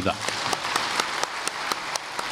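A congregation applauding: a dense, even patter of many hands clapping, with a few sharper single claps standing out.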